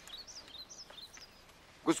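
Small birds chirping faintly in the background, a quick string of short high chirps, until a man's voice comes in near the end.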